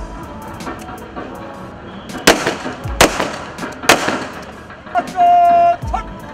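Police rifles fired into the air in a ceremonial gun salute: three shots a little under a second apart, each a sharp crack with a trailing echo. Near the end a loud, steady, horn-like tone sounds for about half a second.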